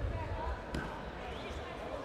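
Taekwondo competition hall ambience: distant voices echoing in the hall with low thuds, and one sharp smack about three-quarters of a second in.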